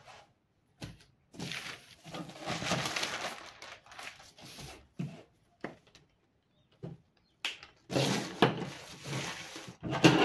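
Brown pattern paper rustling and crackling in two long stretches as a piece is cut off and the sheets are handled, with a few light knocks on the table in between.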